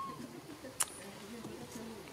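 Low cooing bird calls in the background, with a short chirp at the start and a single sharp click a little under a second in.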